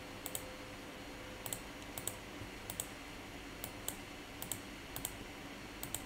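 Faint clicks of a computer mouse button, about a dozen spread irregularly, many heard as quick press-and-release pairs, over a faint steady hum.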